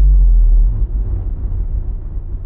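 A deep, loud bass rumble, an end-card boom effect. It holds at full level for under a second, then slowly fades away.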